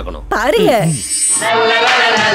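A voice sliding down in pitch over a thin, high buzzing whine, then a song with singing starts about one and a half seconds in.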